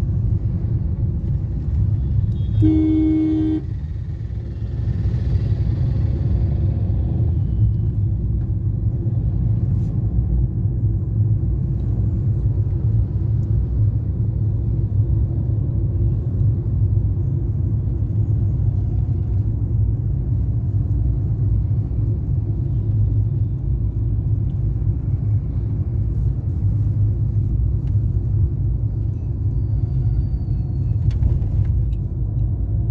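Steady low rumble of road and engine noise inside a moving car's cabin. A vehicle horn sounds once, for about a second, about three seconds in.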